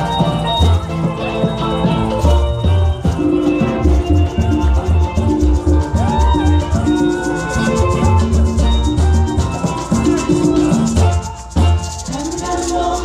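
Live parang band playing through the stage PA: strummed cuatro and guitar over a pulsing bass line and shaken maracas, in a steady dance rhythm, with a short break near the end.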